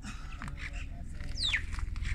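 A single short, high whistled call sliding down in pitch about one and a half seconds in, typical of a bird, over a steady low rumble of wind on the microphone and faint murmuring voices.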